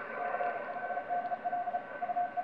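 Morse code (CW) heard through a Yaesu FT-991 transceiver's speaker on the 15 m band: a mid-pitched tone keyed on and off in dots and dashes over band hiss, with a steady whistle underneath. The radio's digital noise reduction (DNR) is switched on, which the operator says sometimes makes reception sound a bit robotic.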